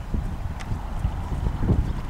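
A sports pony's hooves thudding on a sand arena surface at a trot, a run of dull low hoofbeats.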